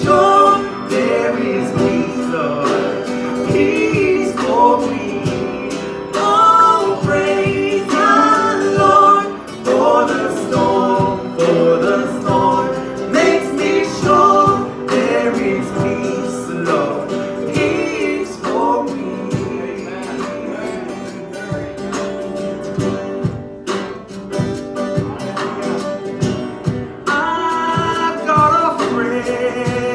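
Live Christian worship song: a woman's singing voice with a strummed acoustic guitar, amplified through microphones.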